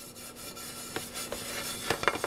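Cloth towels rubbing over a ridged panini-maker griddle plate as it is dried, a steady rubbing with a light knock about a second in and another near the end.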